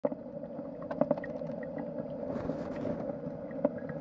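A steady low hum with a few light clicks, about a second in and again near the end.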